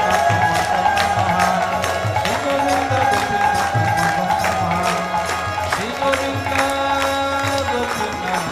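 Devotional kirtan music: held harmonium tones over a mridanga drum pattern, with a steady beat of crisp strokes.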